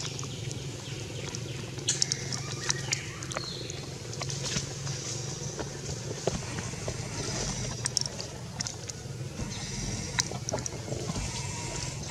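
Faint animal calls with scattered clicks and rustles over a low, steady background hum.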